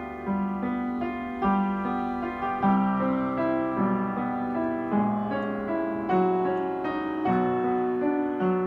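Yamaha P121 upright acoustic piano being played at a slow, gentle pace, new notes struck about once a second and ringing on over sustained lower notes.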